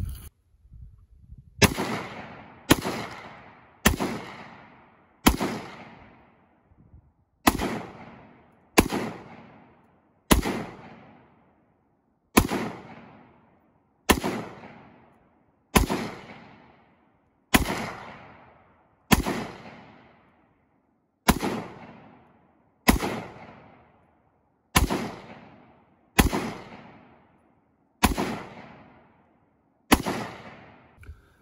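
A Ruger Mini-14 semi-automatic rifle firing about nineteen single aimed shots at an uneven pace of one every one to two seconds. Each crack is followed by a short echo that fades out.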